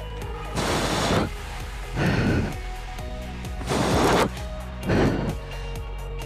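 A person breathing hard during a weighted exercise, four forceful exhales about a second and a half apart, over steady background music.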